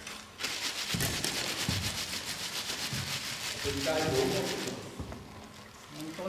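A loud rasping, rubbing noise close to the microphone that starts suddenly about half a second in and stops just before five seconds, with a brief man's voice over it near the end.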